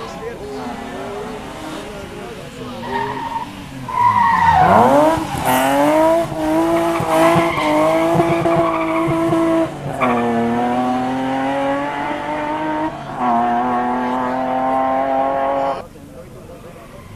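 BMW E30 rally car driven hard: the engine note drops as it brakes and downshifts for the corner, the tyres squeal as the car slides through, then the engine climbs through two upshifts as it accelerates away. The sound cuts off suddenly near the end.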